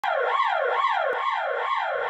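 Siren effect wailing rapidly up and down in pitch, a little over two sweeps a second, steady in level, as the opening of a concert band arrangement before the band comes in.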